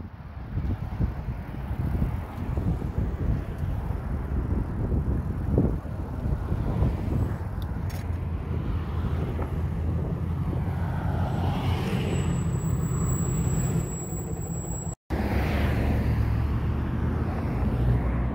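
Road traffic: cars and trucks passing close by on a highway, a steady rumble of tyres and engines that swells as vehicles go by, cutting out for an instant near the end.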